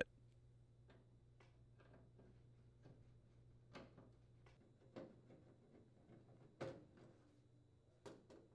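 Near silence, broken by a handful of faint, short clicks and taps of a screwdriver working screws out of a microwave's sheet-metal cabinet, the loudest about two-thirds of the way through.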